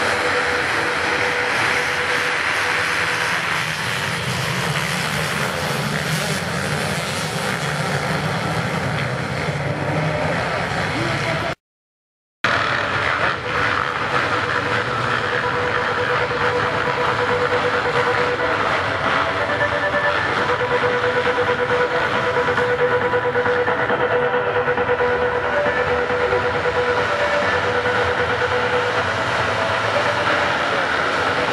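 A pack of motocross bikes running and revving together at the start gate, waiting for the gate to drop. The sound cuts out for under a second about twelve seconds in.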